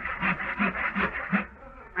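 Handsaw cutting through a wooden bench leg in quick back-and-forth strokes, about four to five a second, stopping about one and a half seconds in.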